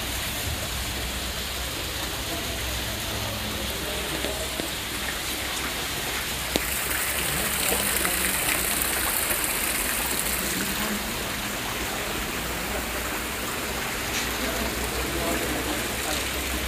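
Steady rushing noise, water-like, with a low hum beneath it, growing brighter and a little louder from about six to eleven seconds in; faint voices in the background.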